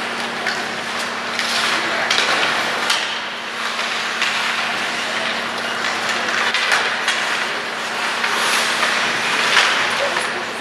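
Ice hockey play: skate blades scraping the ice with sticks and puck clacking in quick, irregular knocks, the sharpest knock near the end, over a steady low hum.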